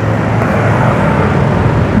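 Steady rumble of street traffic, with motor vehicles and motorcycles passing.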